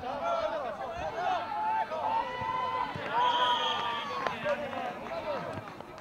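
Several children's voices shouting and calling at once across a football pitch. A short, shrill whistle blast sounds about three seconds in.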